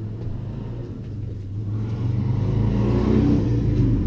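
Road traffic: a low, steady engine hum that grows louder from about halfway through as a vehicle accelerates past.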